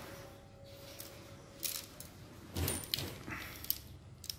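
Faint handling noise of a carbon fishing rod turned over in the hand, its metal line guides and sections clicking and rattling lightly, with small knocks about a second and a half in and again near three seconds.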